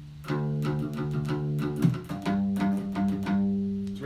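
Bass side of a Folkcraft double mountain dulcimer, amplified, picking a low D note over and over, then stepping up to a higher bass note about two seconds in: the bass line of a D-minor arrangement.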